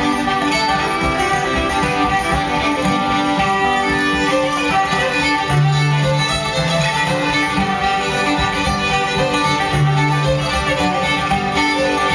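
Two fiddles playing an instrumental folk tune together over acoustic guitar accompaniment, with no singing. A few deep guitar bass notes stand out about halfway through and again near the end.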